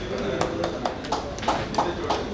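A few people clapping by hand, scattered uneven claps about three a second, over murmuring voices.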